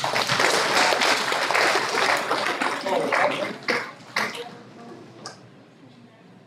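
Audience applauding, fading out after about four seconds, with a few last single claps.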